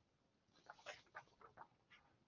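Near silence: room tone with a few faint, short sounds about a second in.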